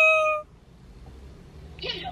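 A woman's high-pitched, drawn-out vowel, held on one note that rises slightly and cuts off about half a second in. Then quiet car-cabin background until she speaks again near the end.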